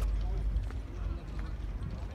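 Faint, indistinct voices of people in the open, over a low rumble, with scattered light clicks.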